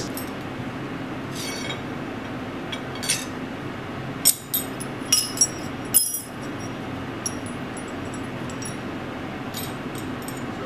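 Small forged iron pieces clinking as they are set down on a steel anvil face: a string of light, ringing metal-on-metal clinks, several close together about four to six seconds in, over a steady low hum.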